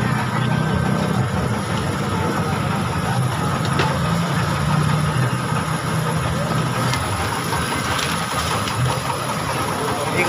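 A steady low engine hum runs throughout with a noisy background, and faint voices come and go beneath it.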